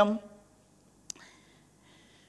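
A man's speech into a handheld microphone trails off at the start. A quiet pause follows, broken by one short click about a second in.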